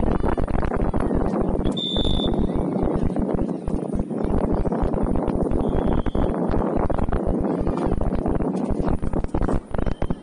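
Wind buffeting an outdoor camera microphone, a loud rough rumble, over a murmur of distant spectator voices, with a brief high-pitched tone about two seconds in.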